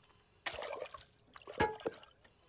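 A stream of water spat from one person's mouth into another's open mouth: a short wet spray starting about half a second in and lasting about half a second, followed by a few brief wet sounds near the end.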